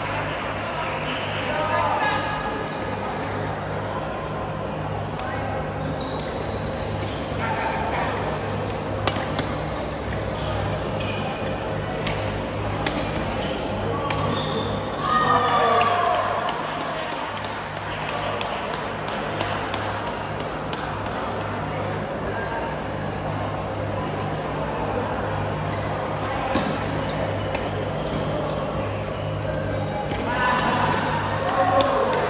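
Badminton hall sound: sharp racket-on-shuttlecock hits, scattered through and echoing in the large hall, over background voices and a steady low hum.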